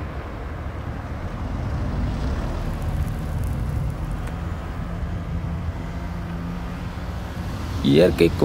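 Steady low rumble of road traffic and street noise, with a faint engine hum in the middle.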